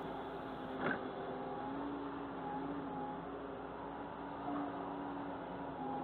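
Excavator running at work: a steady engine drone with a hydraulic whine that rises and falls a little as the machine moves. There is a brief knock about a second in.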